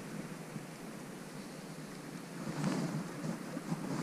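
Faint, steady wind noise on the microphone, with soft handling noise that grows a little louder in the second half.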